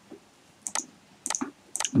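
About five clicks of a computer mouse and keyboard, spread across two seconds, as spreadsheet cells are selected and cleared.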